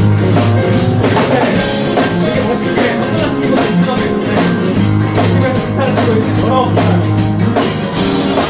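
A live band playing a blues jam: electric guitars, electric bass, a Kurzweil keyboard and a drum kit, with a steady drum beat of about four hits a second.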